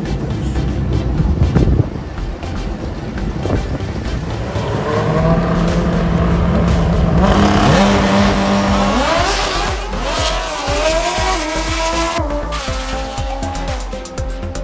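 A drag racing car's engine at the strip. A noisy roar comes first, then a steady engine note, then the car launches around the middle, its pitch rising and climbing in steps as it shifts gears down the track.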